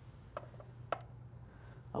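Two light clicks about half a second apart as the resin pendant is put back under the UV curing lamp to harden.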